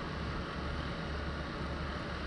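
Steady background hum with a faint even hiss; no distinct events.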